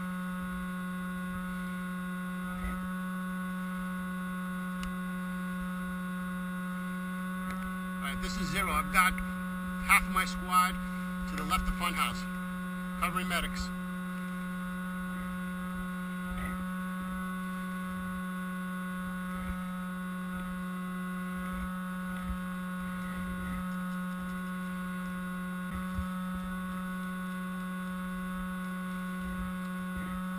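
Steady electrical hum made of several fixed tones, the strongest one low, with a voice heard in short bursts from about 8 to 14 seconds in.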